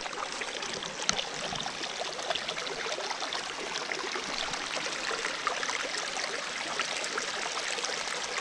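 Small rocky woodland stream running and spilling over a little fall of stones: a steady sound of flowing water.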